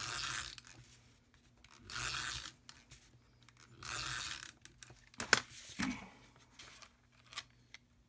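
Tombow Mono glue runner drawn across the back of patterned paper in three short tearing strokes about two seconds apart, followed by a few sharp clicks and light paper handling.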